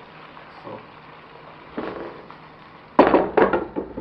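A glass pot lid is set onto a metal wok, clattering sharply several times about three seconds in. Under it, vegetables and seasonings sizzle steadily in hot oil.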